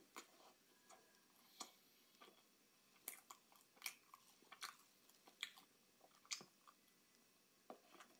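Quiet close-up chewing of a soft chocolate Swiss roll cake, heard as scattered wet mouth clicks and smacks. They come thickest in the middle few seconds.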